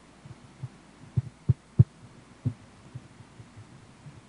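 A few dull, low thumps, three in quick succession about a second in and a softer one shortly after, over a faint steady room hum.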